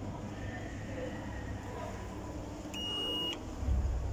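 Single electronic beep from a ThyssenKrupp glass passenger lift, one steady tone about half a second long, a little under three seconds in, over the lift's low hum. Near the end a low rumble swells as the car starts to move.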